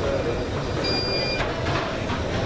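Airport terminal background noise: a steady low rumble of people and luggage moving through the hall, with one short high electronic beep about a second in.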